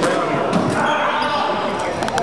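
Squash ball hitting racquets and the court walls, a few sharp hits that echo in the court, over continuous indistinct chatter from people nearby.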